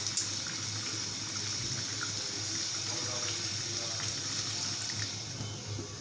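Mutton and potatoes cooking in a pot on a gas stove: a steady sizzling hiss.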